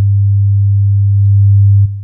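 A Kyma sine wave oscillator playing a loud, steady pure tone at 100 Hz. This is the fundamental alone, the first partial of a square wave built by additive synthesis. It gets slightly louder past the middle and stops with a click near the end.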